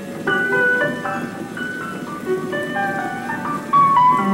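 Solo piano music from the film's score: a gentle melody of separate notes moving over held chords.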